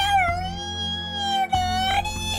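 Cartoon dog crying: one long, high whimpering whine that dips a little and holds, with another starting near the end, over background music. The dog is hurt and upset.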